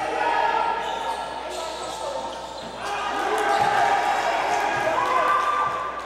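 Live sound of an indoor basketball game: a ball bouncing on the hardwood court amid players' and onlookers' voices.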